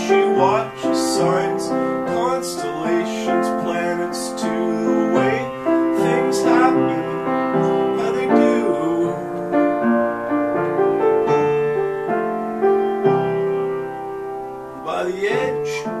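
Upright acoustic piano played with chords in the middle range and a melody line above. The playing softens briefly about a second before the end.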